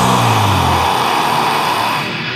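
Heavy metal song at a break: the drums stop and a distorted, noisy chord rings on, its low bass note dying away about halfway through.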